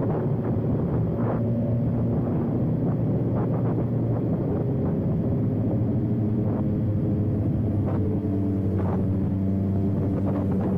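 BMW S1000RR inline-four engine running steadily while the bike is ridden, its pitch drifting a little late on.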